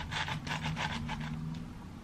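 Quick, rhythmic gritty scratching, several strokes a second, as a small plant is worked loose and pulled out of a clear plastic cup of granular substrate (Fluval Stratum over LECA); it stops about three-quarters of the way through.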